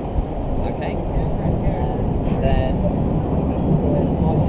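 Wind buffeting the camera microphone: a loud, uneven rumble, with faint voices in the background.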